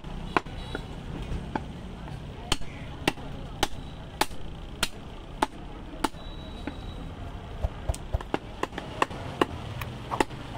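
Butcher's cleaver chopping through a goat leg. Sharp, regular strokes come a little over half a second apart, then faster in the last few seconds.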